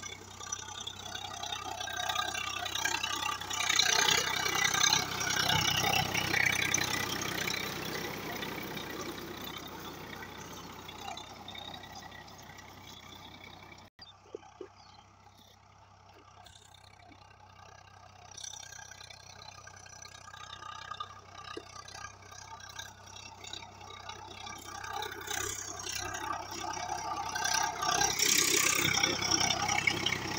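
Swaraj 855 tractor's three-cylinder diesel engine running steadily under load while pulling a rotary tiller through a field. It is loud at first, fades away, drops suddenly about halfway through, then grows loud again near the end as it is heard from close beside the engine.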